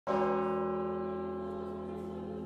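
A church choir holding a sustained chord that starts abruptly at full strength and fades slightly as it is held.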